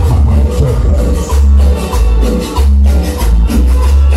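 Loud Latin dance music with a heavy, pulsing bass, played over a sonidero's sound system.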